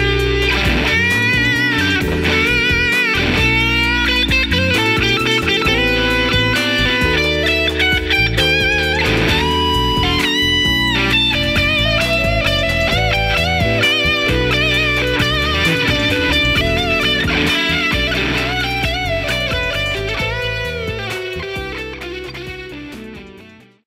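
Electric guitar (Fender Stratocaster) played through Benson Preamp and Germanium Fuzz pedals into a Fender '65 Twin Reverb amp. It plays a lead line of sustained, bent notes with vibrato over chords, fading out near the end.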